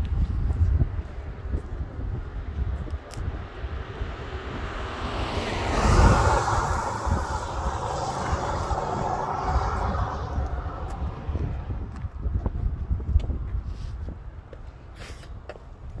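A car driving past on the road, its tyre and engine noise swelling to a peak about six seconds in and fading away by about eleven seconds. Low wind rumble on the microphone underneath.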